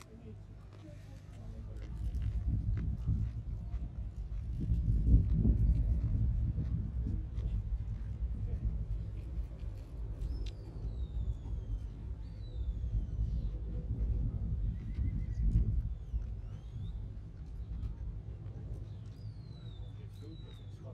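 Sheepdog handler's whistle commands: short high whistled notes sliding down in pitch, a few about halfway through and another near the end. Under them is a low rumble that swells and fades, loudest about five seconds in.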